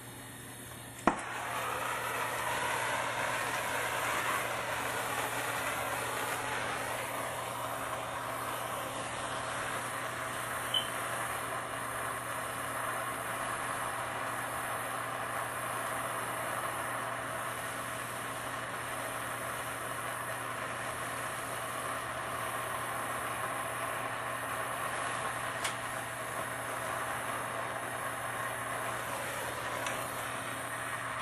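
Handheld gas soldering torch lit with a sharp pop about a second in, then its flame running with a steady rush as it heats a copper pipe fitting to sweat the joint. A couple of faint clicks sound partway through.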